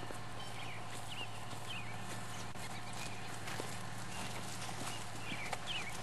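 A horse's hooves clip-clopping at a walk, a few scattered steps over a steady low hum, with short high chirps coming and going.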